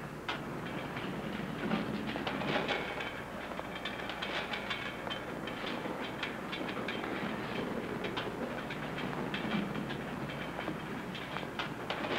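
A wheeled hospital gurney being pushed along a hard floor, its casters and frame rattling with a continuous, irregular clatter.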